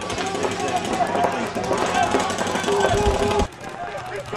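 Paintball markers firing fast, a steady stream of rapid pops, with voices shouting underneath. It cuts off abruptly near the end.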